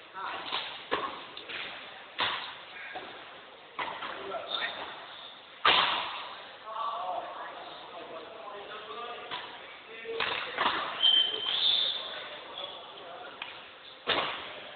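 Badminton rackets striking the shuttlecock in a rally: a series of sharp, irregular cracks, the loudest about six seconds in, over a background of voices.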